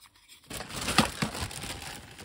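Thin plastic bag crinkling as it is handled, starting about half a second in, with sharp crackles among the rustle, loudest about a second in.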